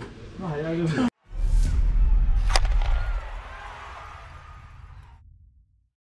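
End-card logo sting: a whoosh into one sharp hit over a deep rumble, which then fades out slowly to silence.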